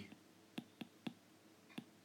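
Stylus tips tapping and clicking on an iPad's glass screen during handwriting: a handful of faint, sharp clicks at uneven intervals.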